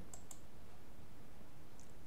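Computer mouse clicking: two quick clicks a few tenths of a second in and another faint pair near the end, over a steady low background noise.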